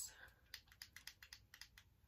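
Faint, quick run of small plastic clicks from the control buttons of a hair flat iron being pressed, switching it on and stepping the heat down to its lowest setting.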